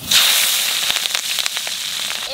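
Green chillies hitting hot oil tempered with nigella seeds in a wok, sizzling and crackling loudly the instant they go in, then easing a little.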